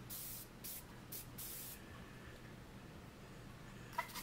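Aerosol gun-cleaner spray can giving about four short, faint hisses in the first two seconds, then a quiet stretch.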